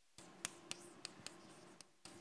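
Chalk writing on a blackboard: a scratchy scraping with several sharp taps as strokes and letters are started, beginning just after the start and stopping shortly before the end.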